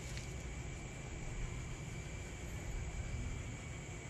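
Steady outdoor night background: a low rumble under an even hiss, with a faint, thin, steady high tone running through it.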